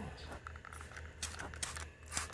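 Water being sprayed onto a car's painted panel: a few short hissing spritzes, mostly in the second half, over a low steady hum.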